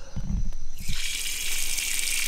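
Water from a tap on a plastic standpipe gushing and splashing onto the soil, turned on suddenly about a second in after a couple of low thumps, then running steadily.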